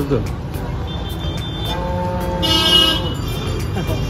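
A vehicle horn sounds once, a steady tone lasting a little over a second, about two seconds in. It plays over the continuous noise of road traffic.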